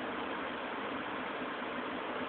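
Steady, even hiss of background noise with no change in level.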